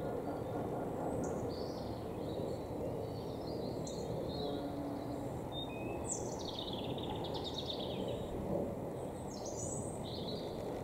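Small birds chirping in short high calls, with a longer falling run of song notes from about six to eight seconds in, over a steady low background rumble.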